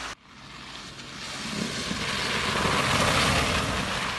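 A car driving on a snow- and slush-covered road, its tyres hissing through the slush. The sound builds as the car approaches and is loudest about three seconds in, as it passes close by.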